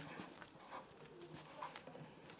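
Faint scratching of a pen writing on paper, in short strokes, with a faint low hum coming and going underneath.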